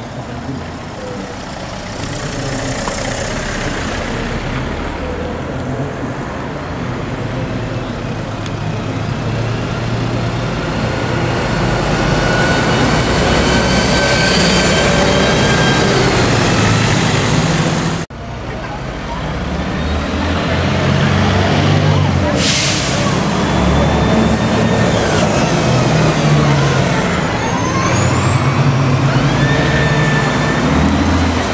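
Karosa B961 articulated city bus's diesel engine pulling away and accelerating, growing louder as the bus passes. After a cut, the engine is still running, with a short burst of compressed-air hiss from the bus's air system about 22 seconds in, and a whine that rises in pitch as it drives off.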